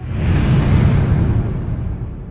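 Cinematic whoosh sound effect with a deep rumble: a rush of noise that swells over the first half second, then slowly fades, the hiss dying away before the rumble.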